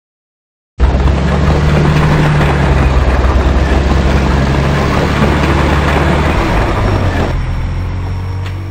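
A loud, steady engine-like rumble that starts abruptly about a second in and begins to fade near the end.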